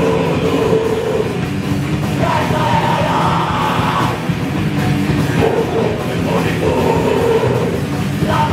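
A raw punk / d-beat band playing live: distorted guitar and a pounding drum kit, with shouted vocals coming in and out.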